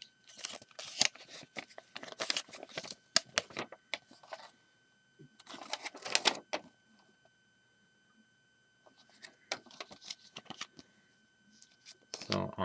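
Paper rustling and crackling as a small leaflet and a paper instruction booklet are handled and flipped, in three bouts of quick, crisp crackles with a quiet pause a little past halfway.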